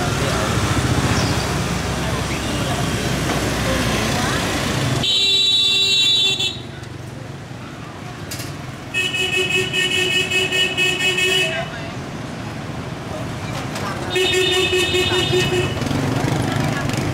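Dense motorbike traffic noise, then motorbike horns: one held beep about five seconds in, a longer rapidly stuttering beep from about nine to eleven seconds, and another short blast near the end.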